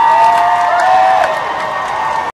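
Crowd cheering, with several long, high whooping calls held and overlapping.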